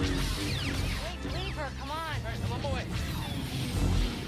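Soundtrack from a TV drama action scene: music with sound effects and no clear words, including a quick run of rising-and-falling whistling glides from about a second in until nearly three seconds.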